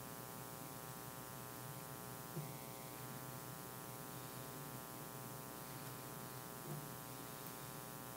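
Steady electrical mains hum and buzz, with two faint taps, one about two and a half seconds in and one near the end.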